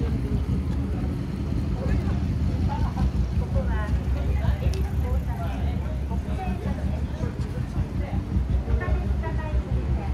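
Night street ambience: a steady low rumble of city traffic, with passers-by talking in snatches over it.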